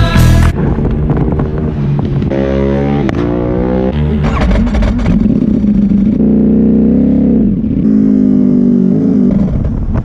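Ducati Panigale V4 superbike's V4 engine, heard from a camera on the bike, pulling away in first gear with the revs climbing in steps, then running more steadily after a shift into second.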